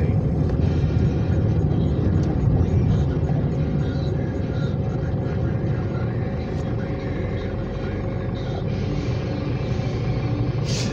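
Engine and road noise heard inside a moving car's cabin: a steady low rumble that eases slightly as the car slows in traffic.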